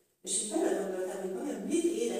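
Speech only: a woman preaching in Hungarian, picking up again after a brief pause at the very start.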